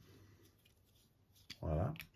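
Faint scraping of the small metal UV lamp's tail cap being unscrewed by hand, with a click about one and a half seconds in as it comes free. Just after, a man's voice gives a brief hum.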